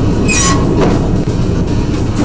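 Underground mine man-riding train running along its track with a steady heavy rumble, and a brief high-pitched wheel squeal about a third of a second in.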